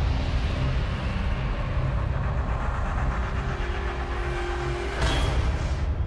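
Outro sound effect: a low, steady rumble with a whoosh and a rise in level about five seconds in.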